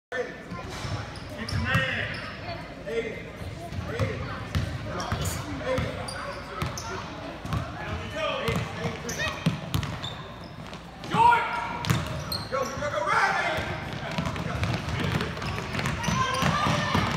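Basketball being dribbled on a hardwood gym floor, thumps coming in runs, with spectators' and players' voices shouting over it and one loud shout about eleven seconds in.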